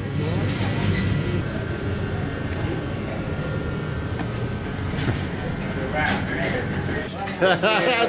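Restaurant kitchen background noise: a steady low hum, with a voice speaking briefly near the end.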